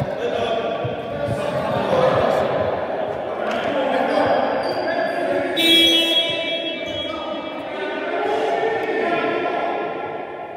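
Basketball bouncing on a reverberant sports-hall court among players' voices, with a brief high-pitched squeal about six seconds in.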